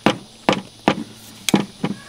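About five sharp clicks and knocks, roughly two a second, as the keyed clamp-cable plug of a portable jump starter is worked into its socket on the battery pack.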